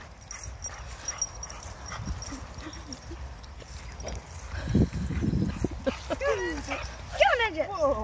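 Two dogs at rough play on grass: a low growling scuffle about five seconds in, then a string of high yelps that each fall sharply in pitch near the end. Wind rumbles on the microphone throughout.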